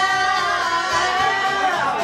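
Women singing karaoke into microphones over a backing track, holding one long note that bends down and fades just before the end.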